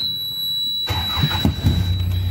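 Jeep engine being cranked and catching about a second and a half in, then settling into a steady idle. A thin, steady high-pitched whine runs underneath.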